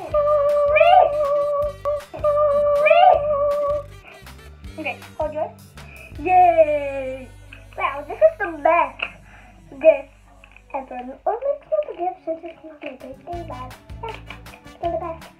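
Background music under young girls' voices: a couple of long held, sung or hummed notes in the first four seconds, then chattering voices for the rest.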